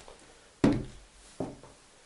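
A cordless drill set down on a table with one sharp knock about half a second in, followed by a fainter tap less than a second later.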